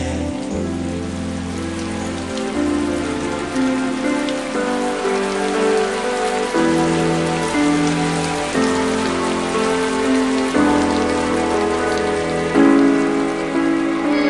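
Steady rain falling, heard over a slow instrumental passage of held chords that change about every two seconds.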